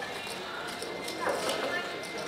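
Casino table ambience: background voices talking, with a few light clicks of casino chips being handled at the table. A voice is louder for a moment a little past halfway.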